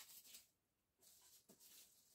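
Near silence, with faint scratching and a light click as scissors slit the small strips of adhesive tape on a paper-wrapped box.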